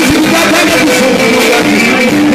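Live sungura band music, loud: electric guitars playing a running melody over a steady band backing, heard from the audience.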